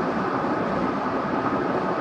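Steady road noise inside a moving vehicle's cabin: an even rush with no distinct events.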